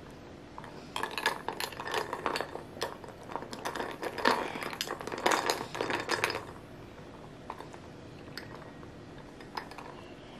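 Ice cubes and a metal straw clinking and rattling in a glass of iced coffee: a busy run of quick clinks for about six seconds, then only a few faint clicks.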